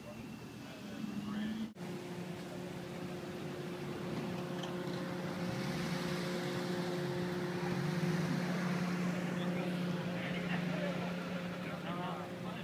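An engine running steadily at idle, a constant hum that grows a little louder towards the middle, with people talking in the background.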